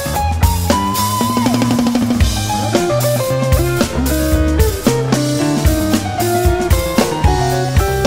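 A live rock band playing an instrumental jam: a drum kit keeps a busy beat under bass and quick guitar lines. A sustained high note comes in about a second in and wavers as it fades.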